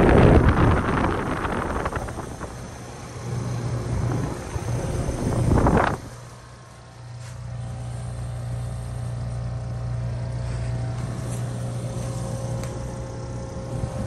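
Heat pump outdoor unit running steadily in heat mode with a low compressor and fan-motor hum, its coil heavily frosted and not switching into defrost. Loud rushing air and wind on the microphone fill the first few seconds and cut off abruptly about six seconds in, leaving the steady hum.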